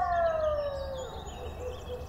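Forest ambience from the podcast's sound design: one long wailing call that glides down in pitch and fades over about a second, with faint high bird chirps behind it.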